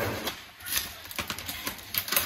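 Light clicks, taps and rustling of grocery packaging being handled on a kitchen counter.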